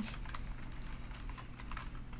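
Computer keyboard typing: a quick, irregular run of quiet key clicks as a word is typed.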